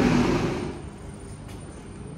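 Loud road-vehicle noise that dies away within the first second, leaving a quieter steady background hum.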